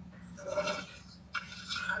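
A woman's voice in short bits of speech, over a steady low hum.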